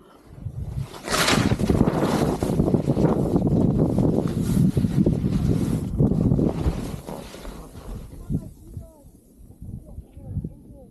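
Skis scraping and sliding down steep, icy snow, with wind rushing over the microphone. The sound builds about a second in, holds loud, then fades after about seven seconds.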